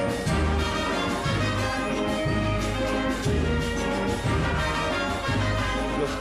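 Concert wind band playing, brass and woodwinds sustaining chords over a low bass line that moves about once a second.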